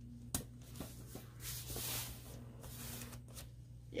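Hands handling paper and washi tape on a planner page: a small click near the start, then soft rustling and rubbing as the tape is pressed down onto the paper.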